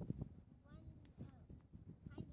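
Faint scattered taps of footsteps on shell-strewn gravel, with a few faint high, sliding calls in the background.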